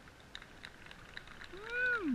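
A person's short vocal call near the end, rising and then falling sharply in pitch, over faint scattered clicks.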